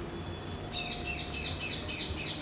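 A bird calling outdoors: a rapid run of high chirps, about five a second, each falling in pitch, starting a little under a second in.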